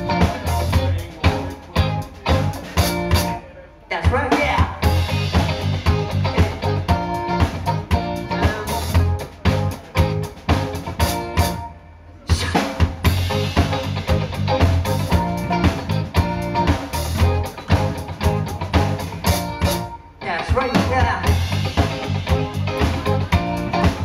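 Live rock band playing a song with drum kit, electric guitars, bass and keyboard, and a male singer. The whole band stops for under a second three times, about 3.5, 11.5 and 20 seconds in, then comes straight back in on the beat.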